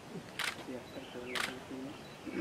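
Two sharp clicks about a second apart, under quiet talk.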